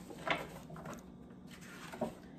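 Soft rustling as a paper picture book's pages are handled and turned, a few short brushes with the loudest about a third of a second in.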